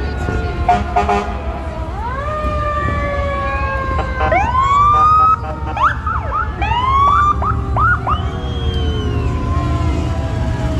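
Several emergency-vehicle sirens sounding at once: long slow falling wails overlapped by a run of quick rising whoops between about four and eight seconds in, over a steady low rumble.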